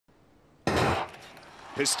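A sudden loud burst of noise about half a second in, lasting about a third of a second and then fading into a faint noisy background, followed near the end by a man's voice beginning race commentary.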